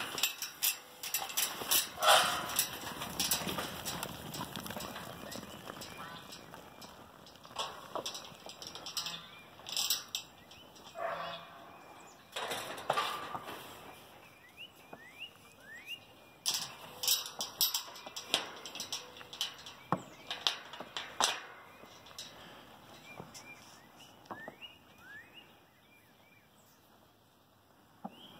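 Clatter, knocks and rustling as sheep are let out of a metal-panel pen and move off. Short rising bird chirps come through in the second half.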